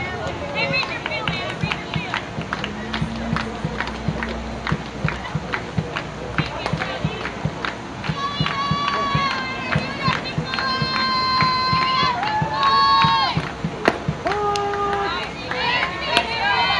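Softball dugout cheer: rhythmic clapping with voices for about the first half, then girls' voices chanting long, drawn-out high notes one after another.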